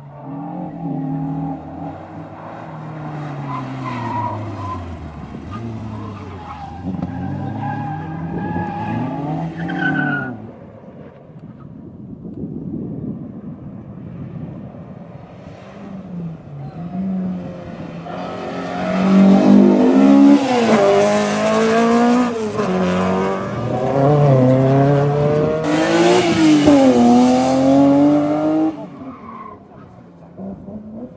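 Slalom cars driven hard through a cone course, one after another: engines repeatedly revving up and dropping back between the cone gates. The louder run in the second half brings rapid rev rises and drops and tyre noise.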